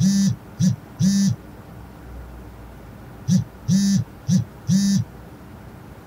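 A mobile phone vibrating with an incoming call. It buzzes in a short-long, short-long pattern, pauses about two seconds, then repeats.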